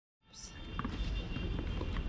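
Outdoor ambience fading in after silence about a quarter of a second in: a low rumble with faint voices, growing louder.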